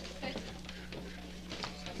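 Faint background voices and shuffling movement over a steady low electrical hum.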